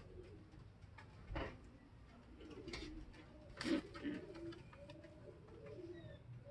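Domestic racing pigeons cooing softly: low, wavering coos begin about two seconds in and go on repeatedly. A few short knocks or taps fall among them, the loudest a little past halfway.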